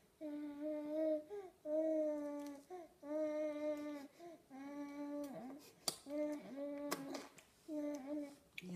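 A baby humming while eating, a run of held notes of about a second each, nearly all on one pitch. A couple of sharp clicks fall in the second half.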